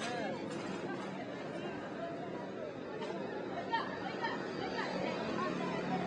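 Faint chatter of passers-by talking in the street, over steady background noise.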